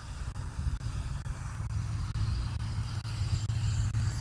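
Road traffic: the low rumble of cars going by, growing louder in the second half.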